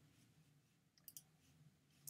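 Near silence: room tone, with two faint short clicks close together about a second in.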